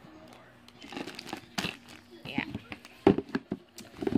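Plastic wrapping of a pack of panty liners crinkling as it is handled, with scattered clicks and one sharper knock about three seconds in.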